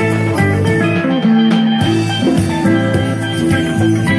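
Live band music: a steel pan, electric guitar and drum kit playing together.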